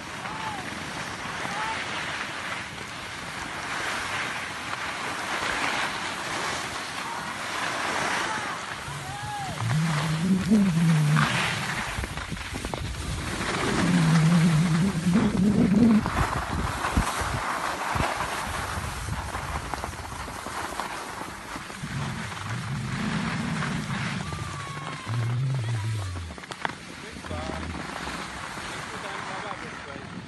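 Steady rushing and scraping of skis sliding over packed snow while skiing down a piste, mixed with wind on the microphone, with a few muffled voices breaking in.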